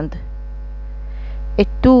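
Steady low electrical mains hum with a row of even higher overtones, running under a pause in speech. A woman's voice comes back near the end.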